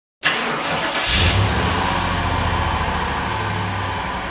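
An engine starting up, with a short hissy rise about a second in, then running steadily with a low, even hum.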